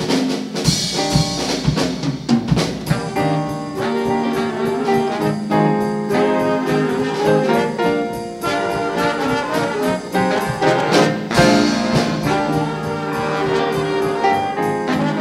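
Jazz big band playing live: the horn section of saxophones and trombone plays over drum kit, piano and upright bass, with steady drum strokes.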